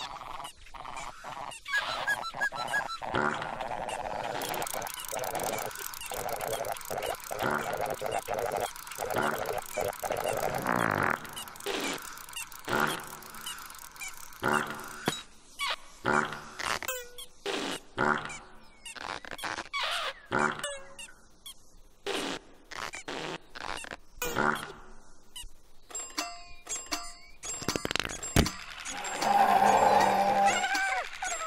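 Cartoon sound effects of a whimsical flying airship, the Pinky Ponk: a string of honking, hooting calls mixed with many short clicks and knocks as it floats down and lands.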